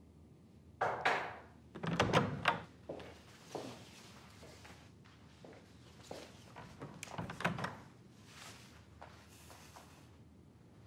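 Several knocks and thuds in a room: one about a second in, the loudest cluster about two seconds in, and quieter ones later.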